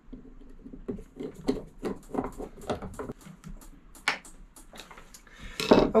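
Brass fuel valve being screwed onto a wooden mounting block with a hand screwdriver: irregular small clicks, scrapes and taps of metal parts on wood, with a sharper knock about four seconds in.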